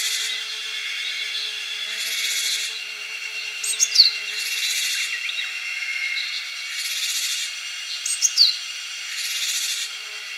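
Japanese tit calls: a harsh, buzzy note about every two seconds, of the kind this tit uses as its snake alarm, with short whistled notes falling in pitch twice between them, the loudest sounds.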